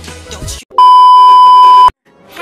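Music with a voice breaks off about half a second in, then a loud, steady censor bleep tone sounds for about a second and stops abruptly.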